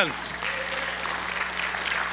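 Congregation clapping, a light scattered applause, over a low steady hum.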